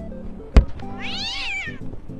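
A soccer ball kicked hard, one sharp thud about half a second in, followed by a cat-like meow about a second long whose pitch rises and falls, over background music.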